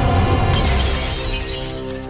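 A glass-shattering sound effect hits about half a second in and its tinkling fades over about a second, laid over theme music with low sustained notes.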